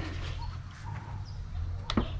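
Quiet outdoor background with a low rumble and a few faint bird chirps, broken by a single sharp click near the end.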